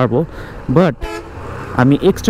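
A vehicle horn gives one short, steady toot about a second in, over the low rumble of a moving motorcycle.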